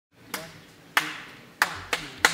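A live band's count-in: sharp clicks, three evenly spaced then coming twice as fast near the end, each ringing out briefly in the hall before the band comes in.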